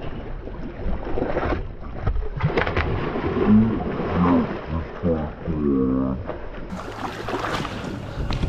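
Seawater splashing and sloshing against the boat's hull as a sand tiger shark thrashes at the surface and swims free after the line breaks, with short excited voices over it in the middle.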